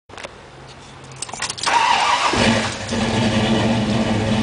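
1972 Pontiac GTO's V8 being started from the cabin: a few light clicks, then the starter cranks for under a second about one and a half seconds in, and the engine catches and settles into a steady idle.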